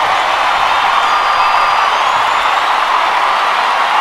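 Large concert audience cheering and applauding at the end of a song, with several whistles heard over the steady noise of the crowd.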